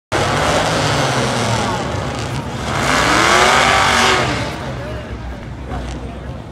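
Drag-racing muscle car engines running loudly at the starting line, with one rev rising and falling back between about three and four seconds in.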